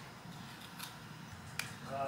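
Quiet room with one short hiss of a plastic trigger spray bottle misting hair a little before the middle, then a single sharp click.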